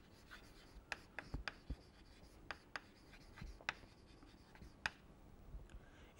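Chalk writing on a chalkboard: a string of faint, sharp, irregular taps and short scratches as a line of handwriting is chalked up.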